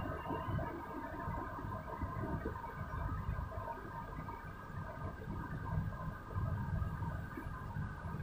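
Marker pen writing on a whiteboard, faint and irregular strokes, over a steady faint electrical hum in the room.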